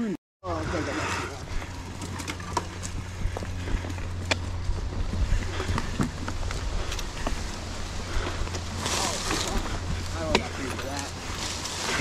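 Mountain bike riding down a rough dirt singletrack: a steady low rumble of rolling, with frequent sharp clicks and rattles from the bike over rocks and roots.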